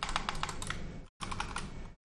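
Computer keyboard keys clicking in quick succession as a word is typed into a line of code, with a brief break just after a second in.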